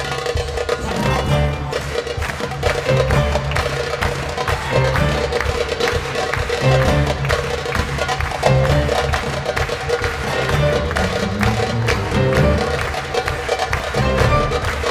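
Instrumental music from a small acoustic ensemble: a quick, busy percussion pattern over sustained pitched instruments, without singing.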